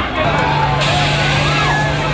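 Police water-cannon truck running with a steady low hum, and a hissing jet of water coming in just under a second in, over crowd voices.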